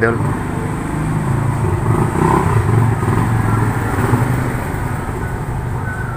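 A steady low mechanical hum with a faint motor-like drone in the background.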